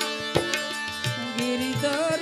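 Harmonium playing held chords with tabla strokes in devotional Indian music; one sharp tabla stroke stands out early on. About a second in, a wavering sustained note enters over the drone.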